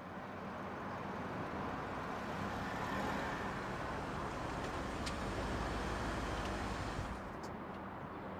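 A car driving: steady engine and road noise with a low rumble, swelling slightly in the middle and easing off near the end.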